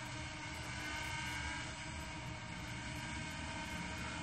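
Faint, steady hum of a small quadcopter's propellers, the Yuneec Breeze hovering about 30 feet up, over a background hiss.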